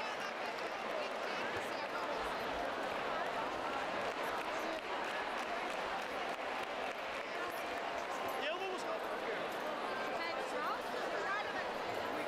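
Steady murmur of a large crowd, many voices talking over one another in a big hall.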